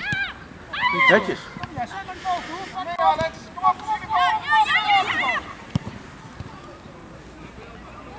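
High-pitched children's shouts and calls, several in quick succession over the first five seconds or so, with a single sharp knock a little later.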